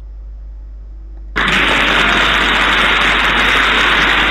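Loud, steady rushing hiss from a game sound effect, starting suddenly about a second and a half in and holding even without any rhythm or pitch.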